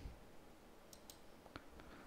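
Near silence with a few faint computer mouse clicks, about a second in and again a little later.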